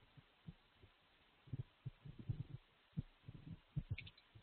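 Faint, irregular low thuds of computer keyboard keys being typed, dull through the microphone, coming in bunches about one and a half seconds in and again near the end.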